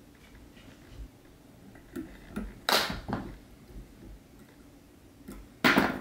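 Quiet handling sounds of a fly being whip-finished and its thread cut at a fly-tying vise. A few faint taps, then two short sharp rustles about halfway through, and a louder one near the end.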